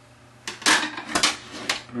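Small hard objects clattering against each other and a hard counter: about five sharp clacks starting about half a second in, as makeup supplies are picked up and handled.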